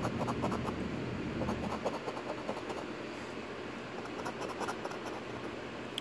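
A coin scratching the coating off a paper lottery scratch-off ticket: a quick, continuous run of short rasping strokes.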